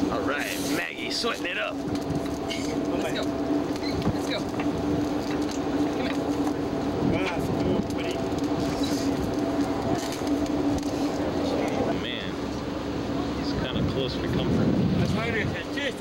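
Crew hauling a schooner's sail up by hand: scattered clicks and knocks of rope and deck gear over a steady mechanical hum, with voices calling out near the start and again near the end.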